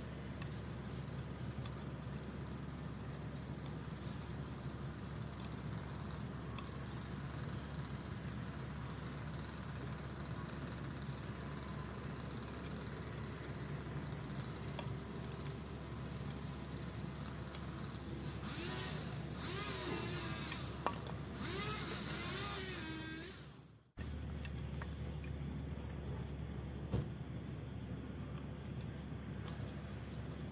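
Pocket knife shaving and scraping a spiral groove into a wooden walking stick, heard as faint clicks over a steady low outdoor rumble. About two-thirds of the way in, a wavering pitched sound rises over it for several seconds. Then the sound cuts off abruptly and the rumble comes back.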